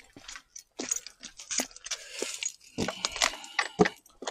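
Irregular clicks and rattles of a hex key working a screw in the handle bracket of a hoverboard go-kart conversion frame, metal tool against metal and plastic, with a few louder knocks about three seconds in.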